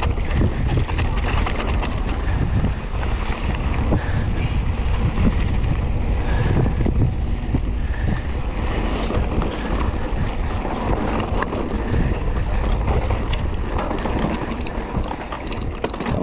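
Mountain bike descending a dirt trail at speed: wind buffeting the camera's microphone, with the tyres running over loose dirt and the bike rattling over bumps.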